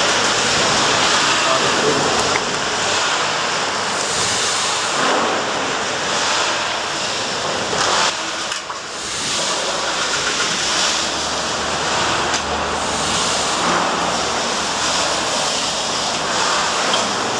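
Horizontal Dingler steam winding engine running slowly: a steady hiss that swells and eases about every two seconds with the strokes, as the piston rod and crosshead slide back and forth.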